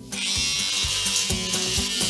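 Electric shaver running with a steady buzz, starting abruptly just after the start, over background music.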